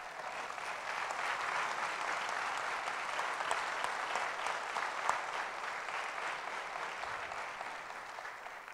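A church congregation and choir applauding, many hands clapping. It builds over the first second or so, holds steady, then gradually fades toward the end.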